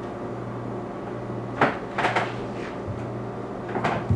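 Large kitchen knife cutting and trimming fat from raw lamb on a wooden cutting board: a few short, sharp cutting strokes, about 1.6 s and 2 s in and again near the end, over a steady low hum.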